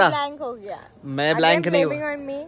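Crickets chirring steadily in the background. Over them a man's voice speaks a short falling phrase, then holds one long drawn-out sound near the end.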